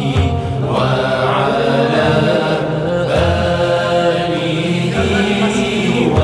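A group of men chanting the Arabic salawat, blessings on the Prophet Muhammad, in unison through microphones. A flowing, gliding melody is sung over a steady low held note.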